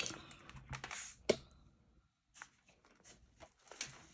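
Light, scattered clicks and rustles of paper and small items being moved around on a tabletop by hand, the sharpest click about a second in.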